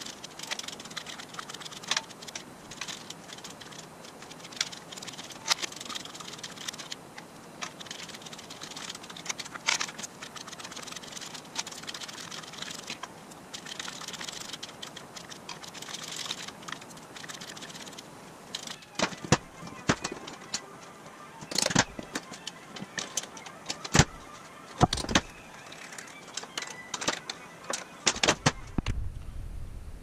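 Irregular metal clicks and taps from hand work at a hydraulic pipe bender and its bottle jack, with louder knocks in the last ten seconds.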